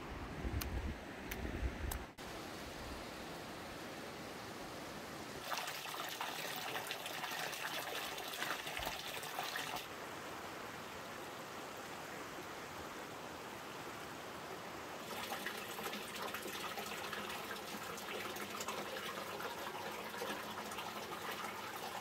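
Steady running and trickling hot-spring water, its tone changing abruptly several times as the scene cuts. A few faint clicks in the first two seconds.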